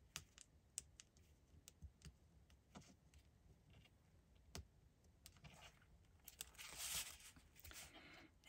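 Near silence broken by faint, scattered light clicks and a brief soft paper rustle as fingers fold over the corners of double-sided tape backing on a paper card panel.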